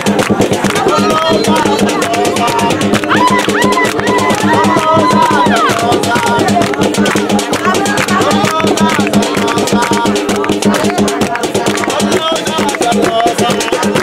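Live group music: voices singing over fast, steady hand clapping and percussion with a rattling shaker.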